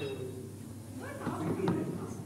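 Indistinct voices talking, with one short knock near the end.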